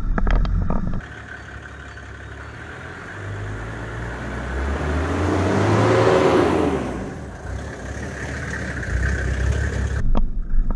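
Mercedes G-Wagon's OM606 turbo-diesel engine pulling away. Its sound swells to a peak about six seconds in, with a pitch that rises and falls, then drops back to a low rumble. It is louder and closer in the first second, which has a few clicks, and again near the end.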